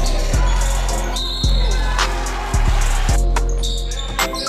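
Hip-hop backing track: deep, sustained bass notes struck anew about once a second, under fast ticking hi-hats.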